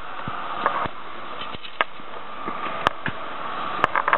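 A long-reach pole pruner cutting a crepe myrtle branch: a series of short, sharp clicks and snaps, the two loudest near the end. Steady traffic noise runs underneath.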